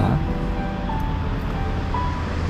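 Steady city road-traffic noise, with soft background music holding a few long notes over it.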